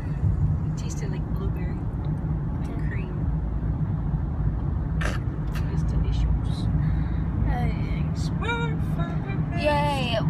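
Steady low rumble of a moving car heard from inside the cabin: engine and tyre road noise.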